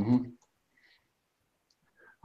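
A man's short 'mm-hmm' at the very start, then near silence broken only by a couple of faint clicks.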